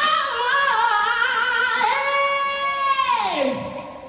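A woman singing a soul-style vocal run, then a long held high note that slides down and fades out about three and a half seconds in.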